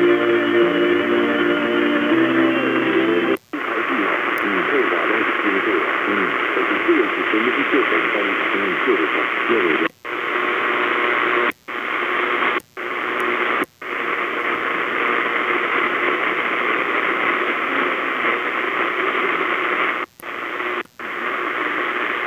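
Night-time AM broadcast band through a small CS-106 portable receiver: a music station for the first three seconds or so, then a sudden change to a weak, noisy distant station with faint speech under heavy static. The audio cuts out briefly about seven times, the receiver muting as it steps between frequencies while being tuned.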